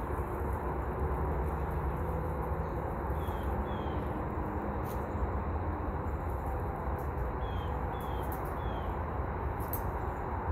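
Steady low outdoor rumble, with a few faint short descending bird chirps around three seconds in and again near eight seconds, and a couple of faint clicks.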